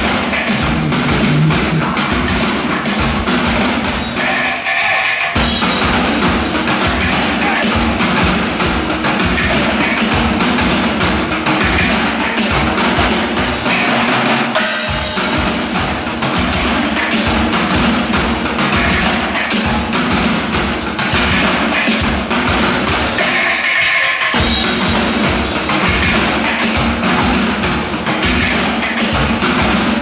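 Drum show on stacked steel barrels: several drummers beating the barrels with sticks in a fast, dense, steady rhythm. The deep booming drops out briefly twice, about four seconds in and again a little past twenty seconds.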